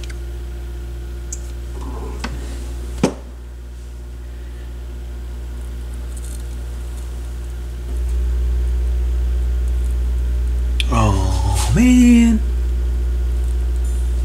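Steady low mains hum from an amplifier's phono input, with nothing but hum coming through because the turntable's RCA cables are not plugged in. A sharp click comes about three seconds in, after which the hum dips, and it grows louder from about eight seconds. A short hummed vocal sound with a gliding pitch comes near the end.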